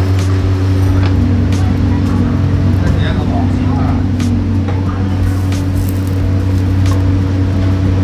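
Restaurant kitchen sound: a loud, steady low hum from the gas range burners and hood under a row of clay pots, with short clicks scattered through it as clay pots and lids are handled.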